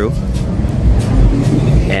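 Road traffic: a car engine running close by as vehicles pass on a busy street, the sound sitting mostly low in pitch.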